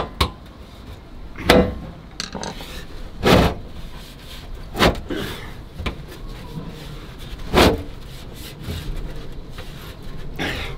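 A thin 1 mm sheet-metal wheel-arch repair panel being forced by hand into a car's rear wheel arch: a handful of short scraping and flexing noises of metal against the arch lip, at about a second and a half, three and a half, five and nearly eight seconds in.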